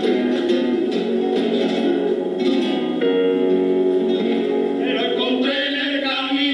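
Live music from a men's choir: strummed guitars with hand clapping and male voices singing together.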